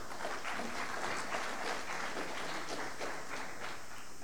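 Audience applauding steadily, a dense patter of many hands clapping that eases slightly near the end.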